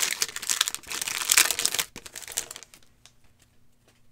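Foil wrapper of a basketball card pack being torn open and crinkled, loud for the first two and a half seconds. After that come fainter clicks as the cards are handled.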